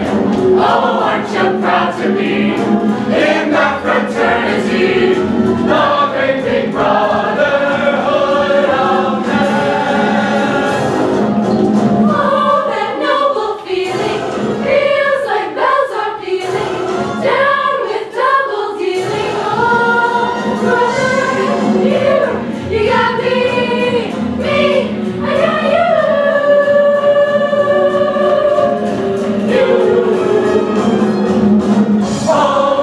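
A mixed ensemble of young voices singing a show tune in chorus over accompaniment. For several seconds around the middle, the lower part of the accompaniment drops away and the voices carry on more exposed.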